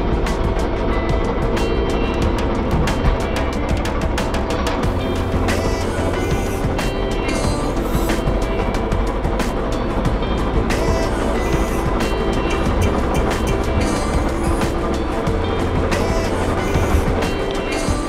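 Background music over the steady running of a small tracked crawler carrier's engine, working under a full load of rice sacks as it climbs a bank.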